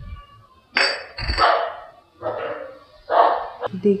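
A steel spoon scraping through thick moong dal halwa in a kadhai while stirring in cream. There is a dull knock at the start, then four scraping strokes roughly a second apart.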